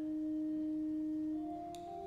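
Pipe organ playing soft held notes in a pure-toned chord, its notes stepping upward about a second and a half in.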